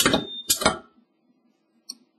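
Sunstone CD-DPM2 capacitive-discharge spot welder making a low-energy Pulse 1 test weld. There are two sharp metallic clacks about half a second apart, with a brief high tone after the first. A faint click comes near the end.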